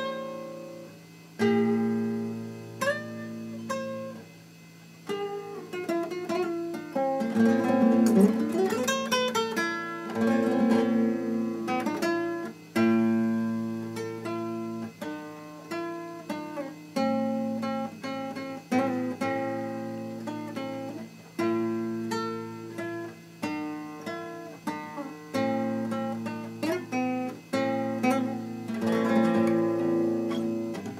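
Nylon-string classical guitar played fingerstyle: a solo piece of plucked single notes and chords left to ring and fade, with a few quickly rolled chords.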